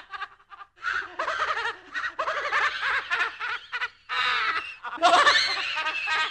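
Spooky horror-style laugh sound effect: a person laughing in repeated voiced bursts with short breaks. The loudest burst comes in about four seconds in.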